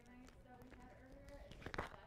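Faint, distant speech, off the microphone, with a short click near the end.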